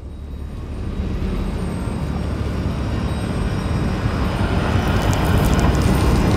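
A deep, low rumble that swells steadily louder.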